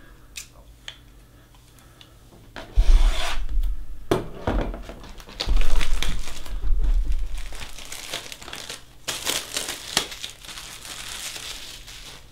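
Cellophane shrink wrap being torn and peeled off a cardboard trading-card box, crinkling loudly in bursts from about three seconds in. Deep handling thumps accompany the bursts, and more crinkling follows near the end.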